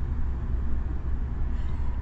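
Steady low rumble of a car driving along the road, heard from inside the cabin: engine and tyre noise at cruising speed.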